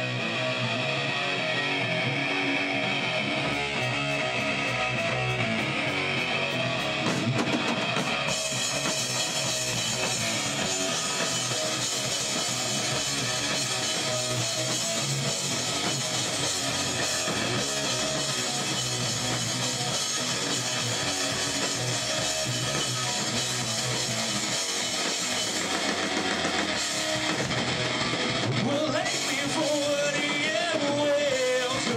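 Live rock band playing an instrumental intro on electric guitars, bass and drum kit. The guitar starts with little else, steady cymbal ticks come in a few seconds in, and the full band with cymbals is going from about eight seconds in.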